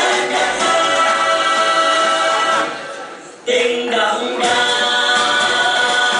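Pre-recorded song track, singing over backing music, played for a lip-synced stage dance. About halfway through it fades down, then comes back in suddenly at full level.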